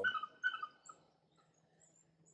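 A dog whining: a few short, high whimpers in the first moment or so, then fading to faint.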